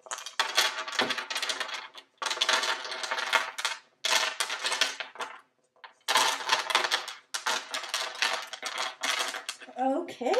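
Dry snack mix of pretzels, cereal squares, cheese crackers and peanuts pouring and being shaken out of a stainless steel mixing bowl onto a metal baking sheet: a dense, clattering rattle in about five runs with short breaks between them.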